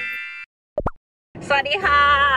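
A chiming intro jingle ends, then a short double 'plop' sound effect just under a second in, followed by a woman's voice and background music near the end.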